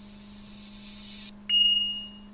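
A steady high hiss that cuts off abruptly, then a sudden high-pitched electronic beep that fades out, over a low steady hum.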